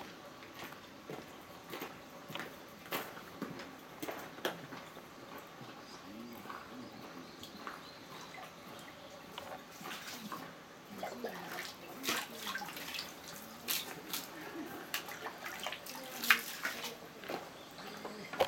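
Footsteps crunching on shrine gravel, then water scooped with a ladle and poured and dripping into a stone basin at a purification fountain, with irregular splashes and small knocks that grow busier and louder in the second half.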